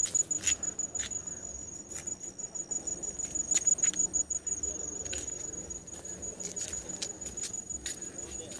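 An insect trilling steadily at a high pitch, with irregular sharp clicks throughout.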